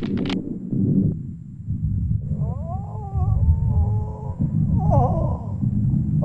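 A man's long cries of pain, wavering in pitch, two drawn-out cries in the second half, over a steady low rumble in the film's soundtrack.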